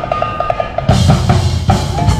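Drums kick in about a second in with heavy, regular beats, cued by the call to "hit it", over a quicker repeating musical pulse that was already playing.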